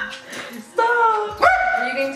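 Small dog whining and yipping, two drawn-out high calls about a second in.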